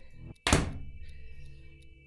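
A single dull thump about half a second in, as over-ear headphones are pulled off and knock against the microphone or desk, followed by a short fading low ring. A faint tail of rock music precedes it.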